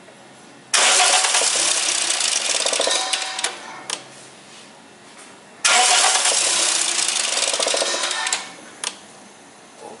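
Toyota VVT-i four-cylinder engine, its valve cover off and timing chain exposed, cranked on the starter twice, about three seconds each time, without starting properly. The engine is not starting well, which the owner puts down to the intake manifold and the many parts taken off.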